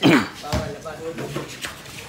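Players calling out during a basketball game: a loud shout falling in pitch at the start, then quieter voices, with a short sharp knock about half a second in.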